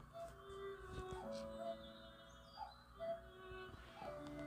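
Quiet background music of soft held notes that change pitch every second or so.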